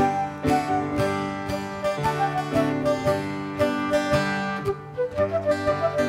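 Live traditional folk band playing an instrumental dance tune: a flute melody over strummed guitar and keyboard chords, with a steady beat.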